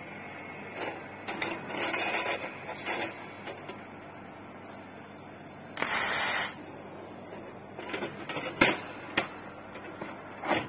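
Handheld laser welding gun firing once on a steel plate: a loud hissing burst of about two-thirds of a second, about six seconds in. Scattered crackles and sharp clicks come before and after it.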